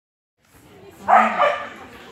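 A dog barks twice in quick succession about a second in, loud and with a short echo from the hall.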